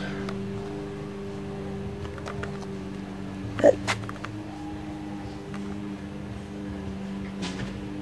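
A steady low mechanical hum made of a few held tones, with two short clicks about halfway through.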